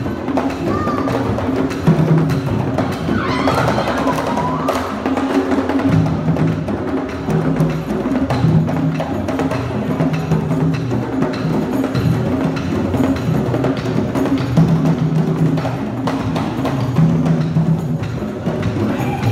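Traditional Ugandan drums played live in a fast, driving rhythm for a dance, with a steady run of strokes and deep pitched drum tones. A brief high wavering cry cuts in about three seconds in.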